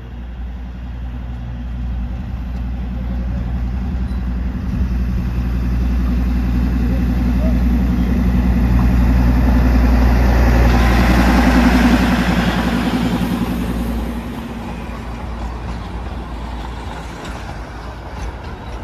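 Darjeeling Himalayan Railway toy train passing close by: the steady low drone of its diesel locomotive builds to its loudest about ten to twelve seconds in, with the rattle and hiss of the coaches' wheels on the narrow-gauge rails, then eases off as the train moves on.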